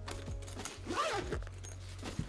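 The zipper of an Alpaka Go Sling Mini fabric sling bag is being pulled open in a ragged run of zipping, over quiet background music.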